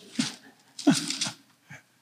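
A man's soft, breathy chuckles close to a handheld microphone: two short sounds about a second apart, each dropping in pitch.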